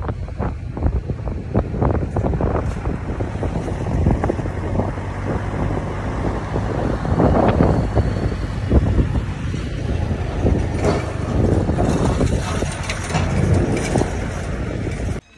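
Wind buffeting the microphone over the low rumble of a moving car's road and engine noise, with irregular gusts.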